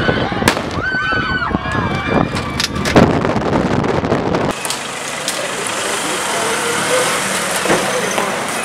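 A crowd shouting as people scatter, with sharp bangs about half a second and three seconds in, from police firing to disperse them. About four and a half seconds in it cuts to steady road noise from riding along a street with motorcycles passing.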